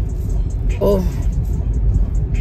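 Steady low road and engine rumble heard inside the cabin of a moving car, with a brief exclaimed "oh" about a second in.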